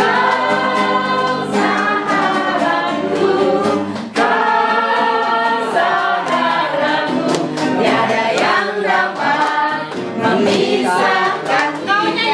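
A group of voices singing a song together, with hands clapping along.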